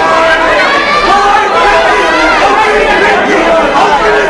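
Loud crowd of spectators shouting and yelling over one another, many voices at once, around a close arm-wrestling match.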